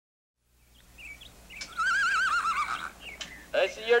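A horse whinnies once: a single wavering call lasting about a second, after the sound fades in from silence. A man starts speaking near the end.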